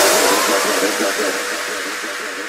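Drum and bass track in a breakdown: the drums and sub-bass cut out, leaving a filtered noise wash with a faint held tone that fades away steadily.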